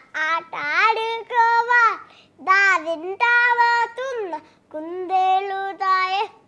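A young girl singing without accompaniment, in long held notes with pitch slides, phrase by phrase with short breaks between them.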